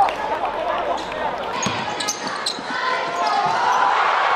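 Gym crowd at a basketball game: voices calling and shouting with no clear words, a few short sharp squeaks or clicks near the middle, and the noise swelling towards the end.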